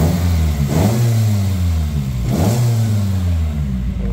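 Toyota 4A-GE 20-valve black-top inline-four, with its four individual throttle bodies, blipped three times. Each time the revs jump up sharply, then fall away and wind back down before the next blip.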